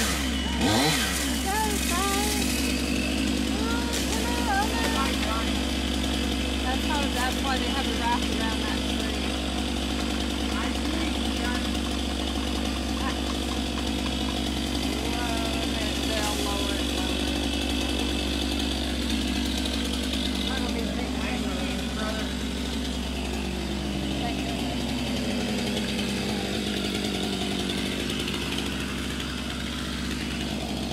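Gas chainsaw running steadily as it cuts through a palm tree's trunk during felling, its engine note dropping for a few seconds about two-thirds of the way through.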